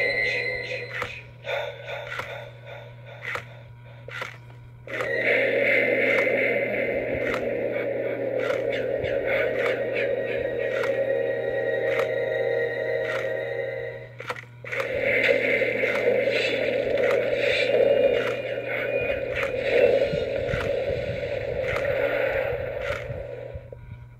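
Gemmy animated Jason Voorhees mini figure running its demo: a tinny sound track plays from its small built-in speaker in two long stretches, broken briefly about fourteen seconds in. Clicking in the first few seconds comes from its motor turning the head and swinging the machete.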